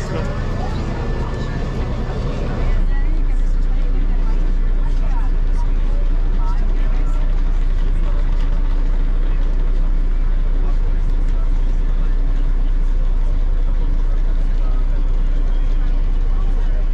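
Bus engine idling with a steady low drone under the chatter of a crowd of passengers aboard. The drone gets louder about three seconds in and then holds steady.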